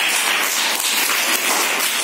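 A group of children clapping their hands continuously, many overlapping claps.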